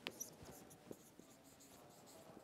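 Faint scratching of a marker writing on a whiteboard, with a few light taps of the tip against the board.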